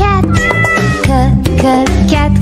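A cat's meow sound effect, one drawn-out call starting about a third of a second in, over upbeat children's background music with a steady beat.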